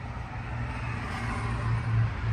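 Cummins 4BT four-cylinder turbo diesel idling steadily with a low, even hum.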